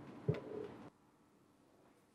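A short pitched murmur from a person, like a closed-mouth "mm", lasting about half a second, then faint room tone from about a second in.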